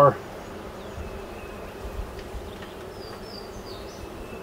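Honeybees humming steadily from an open hive full of bees. A few faint, short high chirps come about three seconds in.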